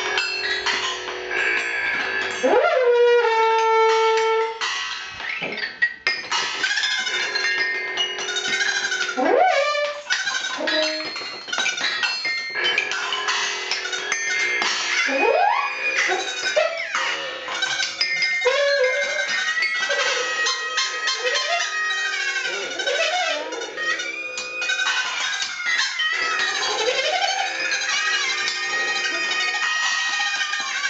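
Live improvised experimental music: a dense, unbroken texture of squealing tones that slide up and down in pitch, over scraping and rattling noises.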